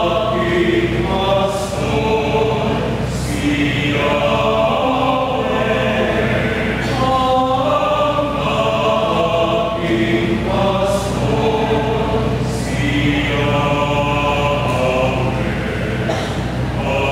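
Mixed choir of women's and men's voices singing a sacred song in several-part harmony, with long held chords that change every second or so and crisp 's' sounds between phrases.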